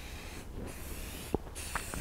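Aerosol spray mold release hissing from the can in short bursts, laying a coat of release onto a silicone mold half. One small sharp click comes partway through.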